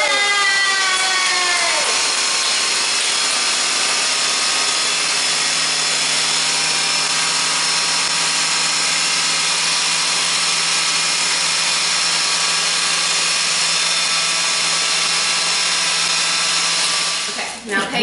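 Countertop blender running steadily at full speed, blending cheesecake mixture, and cutting off about a second before the end. A voice whoops over it in the first two seconds.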